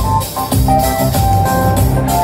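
Live band playing amplified music: electronic keyboard, guitar, bass and drum kit over a steady beat.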